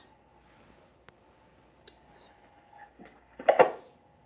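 A serving spoon putting rice onto a ceramic plate: a few faint clicks, then a short, loud clatter of the spoon against the plate about three and a half seconds in.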